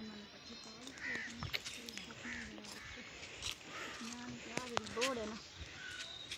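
Faint voices talking in the background, with short bird calls several times over.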